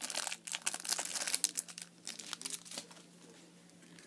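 Clear plastic card packaging crinkling and crackling as it is handled, densely for the first three seconds, then fading to near quiet.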